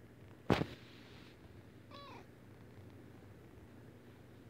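A sharp knock about half a second in, then a tabby kitten gives one short, high-pitched meow about two seconds in.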